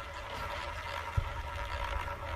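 Roulette ball rolling around the track of a spinning casino roulette wheel, a steady quiet rolling sound, with a single soft low thump about a second in.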